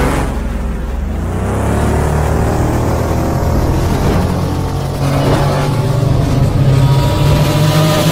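Stylised motorbike engine sound effect, revving and accelerating, its pitch rising in sweeps.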